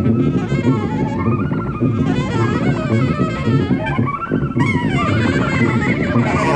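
Live free-jazz band playing, with an alto saxophone weaving melodic lines over a busy low end of tuba and drums.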